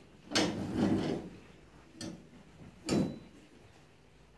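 Metal-legged chairs being moved and set down on a stage. There is a drawn-out clatter starting about a third of a second in, a light knock at about two seconds, and a sharper knock near three seconds.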